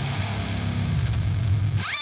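Playback of a heavily distorted, down-tuned thall metal guitar track, steady and thick in the low end. Near the end a squeal glides up in pitch and holds a high tone.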